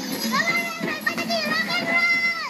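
A young child's high voice singing drawn-out notes, holding a long note near the end.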